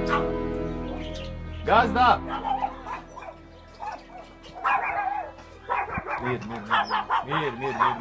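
A dog barking: two loud barks about two seconds in, a few more near five seconds, then a fast run of barks from about six seconds on. Background music fades out in the first second.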